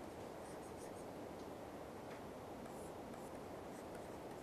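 Faint taps and scratches of a stylus writing on a tablet screen, over a steady low background hiss.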